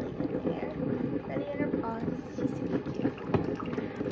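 Coffee machine brewing espresso on its specialty setting, running loud with a steady low drone.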